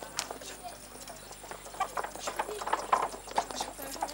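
Horse's hooves clip-clopping as it pulls a cart, irregular knocks that grow louder as it approaches.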